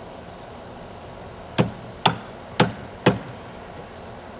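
Hammer striking a chisel four times, about half a second apart, beginning about a second and a half in, chipping a small piece of wood off a 2x4.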